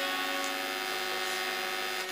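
A chord of steady, sustained notes from the accompanying music, held and slowly fading away.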